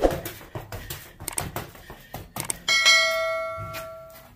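Quick footsteps of sneakers tapping on concrete during an agility ladder drill. About two-thirds of the way through, a bright bell chime rings and fades over about a second: the sound effect of a subscribe-button animation.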